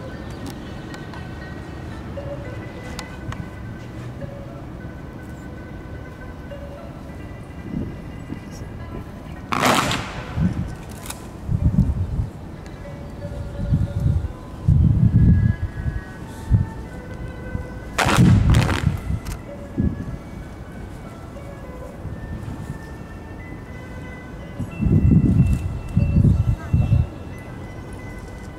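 Accompanying music for a kung fu fan form, broken twice by sharp cracks of the performers' folding fans snapping open together, about ten and eighteen seconds in. Low rumbling bursts also come and go between the cracks and near the end.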